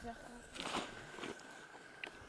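People talking outdoors: a few spoken words at the start, then a brief noisy rustle or crunch a little over half a second in, the loudest moment.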